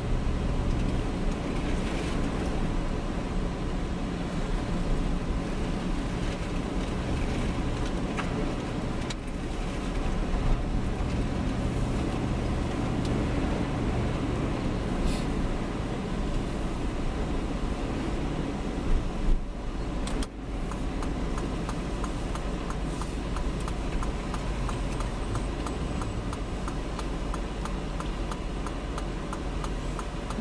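Strong blizzard wind blowing steadily, with a deep rumble, dipping briefly about two-thirds of the way through.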